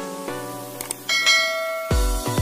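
Subscribe-animation sound effect: a couple of brief clicks, then a bright bell chime ringing about a second in, over sustained synth notes. A heavy electronic dance beat with deep bass kicks in right at the end.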